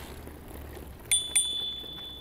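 Bicycle bell rung twice in quick succession about a second in, its clear high ring fading away over about a second and a half.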